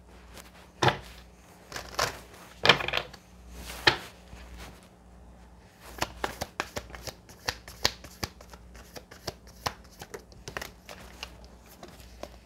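A deck of oracle cards being shuffled by hand: a few separate card slaps at first, then a quick run of soft clicks and riffles through the second half.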